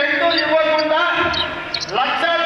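A man speaking in Telugu into handheld microphones, his voice carried through a loudspeaker system.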